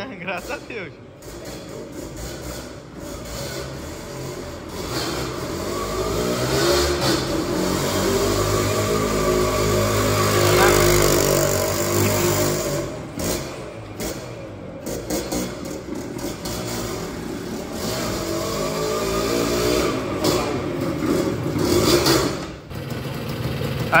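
Yamaha DT 180 single-cylinder two-stroke engine being ridden, its note rising and falling with the throttle and loudest about ten seconds in. The bike has just been brought back to running after standing unused for a long time.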